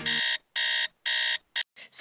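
Phone alarm beeping: three even electronic beeps about half a second apart, followed by two short faint blips near the end.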